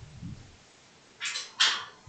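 Two short, breathy hisses of a person's breath close to a headset microphone, about a second apart, in the second half.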